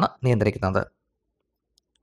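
A man speaking for the first second or so, then a pause of near silence.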